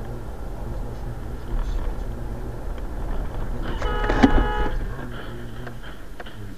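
Low steady rumble of a car on the road, heard through a dash camera. About four seconds in, a car horn sounds for about a second, with a sharp bang partway through it.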